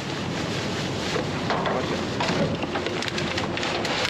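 Steady rustling and scraping of a hand cultivator rake digging through foam carpet padding and plastic trash bags in a metal dumpster, with wind on the microphone.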